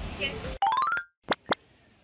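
Cartoon-style transition sound effect: a quick rising glide that ends abruptly, followed after a short silence by two sharp clicks.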